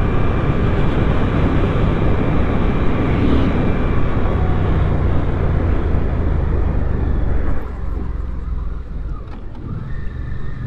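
Wind rushing over the microphone while riding a Suzuki GSX-8S, with the motorcycle's parallel-twin engine running steadily underneath. About seven and a half seconds in, the wind noise eases and the engine drone stands out more.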